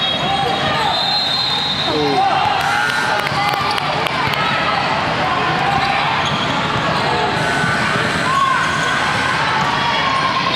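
Gymnasium game sounds: many overlapping voices of players and spectators chattering, with a basketball bouncing on the hardwood court.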